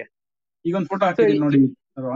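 Speech only: a person talking, after a brief pause at the start.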